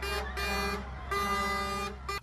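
Truck air horn sounding three blasts, the last and longest in the second half, over the low steady rumble of the trucks' diesel engines.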